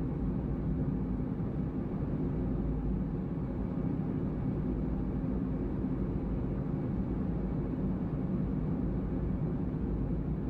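Road noise of a car driving, heard from inside the cabin: a steady low rumble of tyres and engine.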